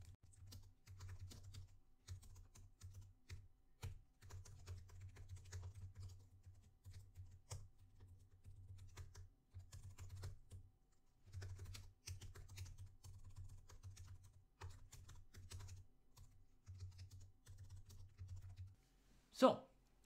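Typing on a computer keyboard: faint, irregular runs of key clicks broken by short pauses.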